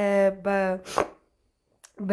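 A woman's voice repeating a rapid 'li-li-li' syllable at one steady pitch. About a second in there is a sharp click, and then the sound cuts out to complete silence for about half a second before the voice comes back at the end.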